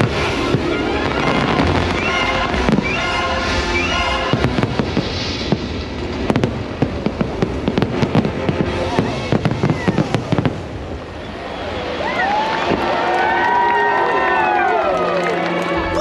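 Fireworks display with its show music: the music plays over scattered bursts, then from about six seconds in comes a rapid barrage of sharp bangs and crackles. Near the end several overlapping rising-and-falling whistles sound as the barrage dies away.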